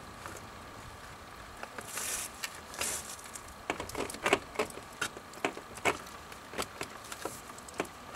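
Hands working plastic poly tubing onto a fitting: irregular clicks, creaks and rustles of the tubing and its tape-wrapped end, with a couple of brief hisses near the start.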